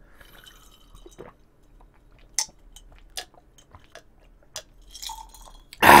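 A person drinking from a glass mug, with a few soft swallowing sounds and scattered short clicks, the loudest about two and a half seconds in. Near the end comes a loud relieved "ah" of speech.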